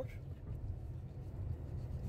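Jeep Compass heard from inside its cabin, rolling slowly: a steady low engine and road rumble.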